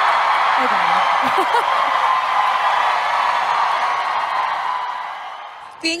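A large hall audience screaming and cheering, the crowd noise fading away slowly over about five seconds, with a woman laughing over it about a second and a half in.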